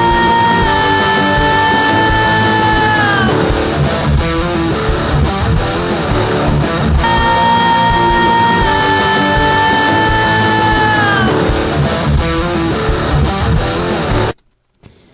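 Playback of a recorded rock band mix (drums, piano, lead and rhythm electric guitars, vocals), with the drum kit captured only by a kick drum mic and one mono overhead; a held high note slides down twice. The bass drum sits low in the mix, overpowered by the other instruments.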